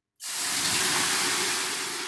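Water ladled onto hot sauna heater stones, flashing into steam with a loud hiss that starts suddenly just after the start and begins to die away near the end.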